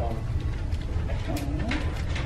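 Classroom room noise: a steady low hum with faint clicks, and a brief low murmuring voice about a second in.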